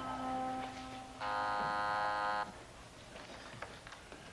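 A brass music cue fading out, then an apartment doorbell buzzer sounding once, a steady buzz of just over a second.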